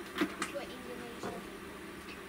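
Faint, indistinct voices in the background, with a few small clicks in the first half second.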